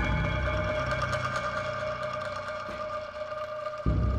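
Ambient background music of sustained tones over the steady low hum of a construction hoist's motor as the cage rises. The hum breaks off abruptly near the end.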